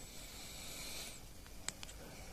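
Quiet handling noise: a faint hiss in about the first second, then two light clicks near the end as things are moved about on the bench.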